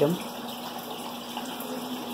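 Steady rush of aquarium water flowing into a hang-on breeder box, with a faint steady hum underneath.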